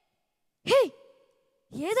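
A short, breathy vocal sigh about two-thirds of a second in, its pitch rising and then falling.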